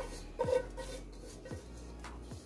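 Soft scrapes and light knocks of a skillet as cooked peppers, onions and chicken are scraped out of it into a bowl of cornbread dressing, with faint music underneath.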